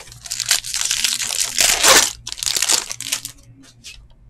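The foil wrapper of a 2019 Bowman Chrome card pack being torn open and crinkled by hand, a dense crackle that is loudest about two seconds in. It tails off into a few faint clicks near the end.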